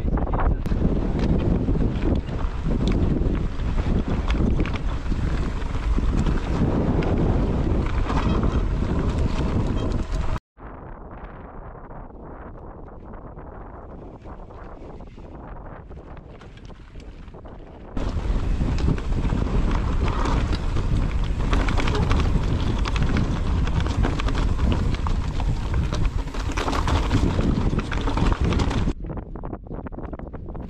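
Wind buffeting a camera microphone while mountain bikes ride down a rocky trail, with the tyres and bike knocking and rattling over the rocks. About ten seconds in the sound cuts to a much quieter stretch for several seconds, then the loud wind noise comes back.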